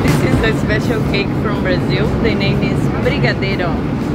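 Steady in-flight cabin noise of an Embraer E195-E2 jet, with people's voices talking over it throughout.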